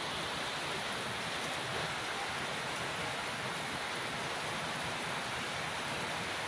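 Rain falling steadily onto a flooded yard: an even, unbroken hiss.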